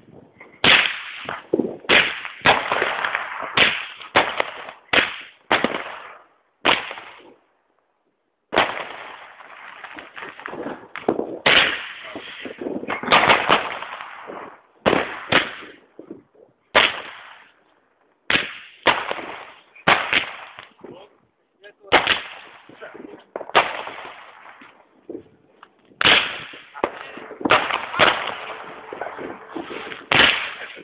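JW21 Condor firework firing shot after shot: sharp reports, each with a short echoing tail, come every half second to second, with a pause of about two seconds a third of the way through.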